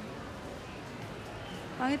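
Steady background hubbub of a large store interior, with faint distant voices. Near the end a nearby voice starts talking.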